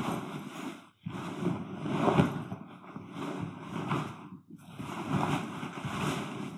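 Rolled canvas swag being hauled out of its fabric carry bag: heavy fabric rustling and sliding in three long bursts, with brief pauses about a second in and again past the middle.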